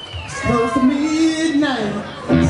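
A live band's singer holding one long sung note that slides down in pitch near the end, with the band playing underneath.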